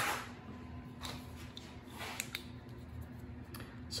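Faint handling sounds as a penlight is picked up and switched on: a short rustle at the start, then a few light clicks and taps over a steady low hum.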